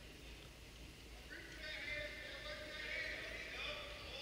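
Quiet gym ambience with faint distant voices, which come in about a second and a half in, over a low steady hum.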